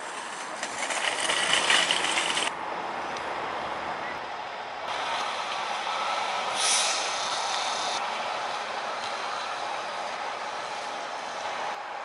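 Outdoor vehicle engine and traffic noise across several cuts. About seven seconds in comes a short, loud hiss from a fire engine's air brakes as the truck moves off.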